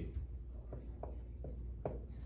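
Dry-erase marker writing on a whiteboard in a few short strokes.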